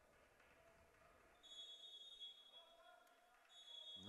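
Near silence in a sports hall, with a referee's whistle faintly blown twice: one long blast about a second and a half in and another near the end. Faint voices murmur in the background.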